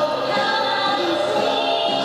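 Women singing a song together with musical accompaniment, several voices holding and moving between notes.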